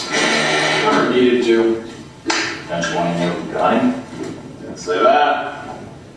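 A person speaking, with a single sharp knock about two seconds in.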